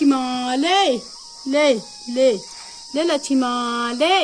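A person's drawn-out, sing-song calls, most likely 'ta-ta' (bye-bye): five in a row, the first and last long held notes ending in a quick rise and fall. Behind them, insects drone steadily at a high pitch.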